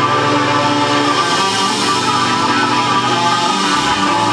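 Live band music: an instrumental passage led by guitar, played loud and steady with no singing, heard from the audience in a small club.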